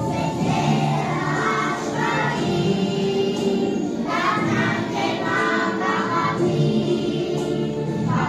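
A song sung by a group of children over backing music, going on steadily.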